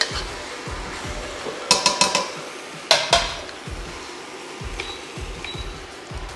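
Metal wok ladle clinking and scraping against a wok while stir-fried noodles are tossed: one clink at the start, a quick run of several strikes about two seconds in, and another about three seconds in.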